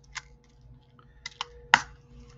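Small sharp clicks and taps of metal pliers and jump rings against a plastic compartment bead organizer: one click early, a couple more after a second, and the loudest a moment later.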